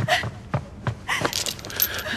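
A few quick footsteps on a wooden floor, then iron chains clinking and rattling for about the last second as they are jostled.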